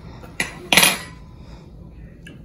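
A metal spoon tapping once and then scraping against a small ceramic bowl as kimchi is spooned out. The scrape just after the tap is the louder sound.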